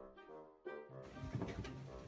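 A short, faint musical jingle of a few stepped notes that ends a little over half a second in, followed by faint room sound.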